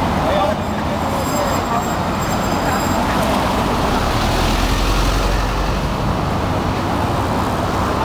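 Steady road traffic noise, with a heavier vehicle's low rumble swelling about halfway through.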